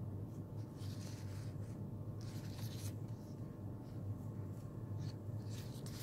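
Soft rustling of a folded ribbon bow handled between fingers, in a few brief patches, over a steady low hum.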